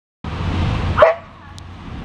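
A dog gives one short, loud bark about a second in, after a rush of noise on the microphone.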